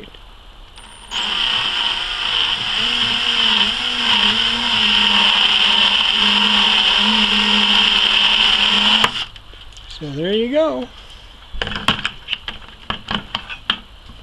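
Electric drill running a step drill bit through the wall of a plastic bucket, boring a 13/16-inch hole. It is a steady motor whine with slight wavering in speed for about eight seconds, then stops suddenly. A few light clicks follow.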